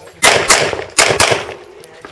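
Handgun fired four times in two quick pairs, about half a second between the pairs.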